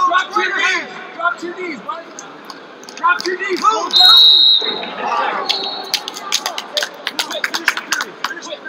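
Coaches shouting from the mat side, then a referee's whistle blows one short, shrill blast about 4 seconds in, stopping the action, with a fainter second blast a moment later. A quick run of sharp smacks fills the last two seconds.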